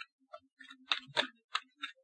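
A deck of tarot cards being shuffled by hand, the cards giving irregular light clicks and snaps against each other, the sharpest a little under halfway through.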